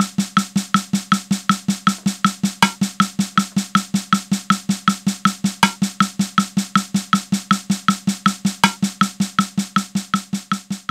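A snare drum pattern played as an even run of notes at 160 BPM in 8/8, about five strokes a second, over a metronome click. A brighter accent about every three seconds marks the start of each bar.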